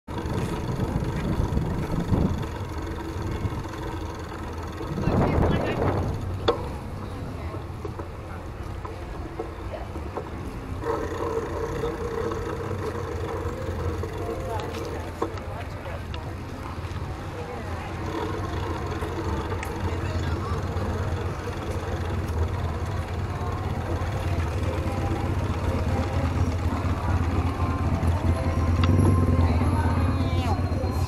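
Busy street ambience: indistinct chatter of passers-by over a steady low rumble of traffic, with a louder swell about five seconds in.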